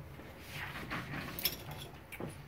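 Faint handling noise with one sharp click about one and a half seconds in.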